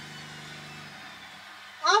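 A steady low mechanical hum from a washing machine running, its pitch shifting about halfway through. A voice starts speaking at the very end.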